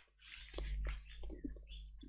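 Faint small clicks and soft rustling at a computer desk, several light sounds a few tenths of a second apart, over a low steady electrical hum.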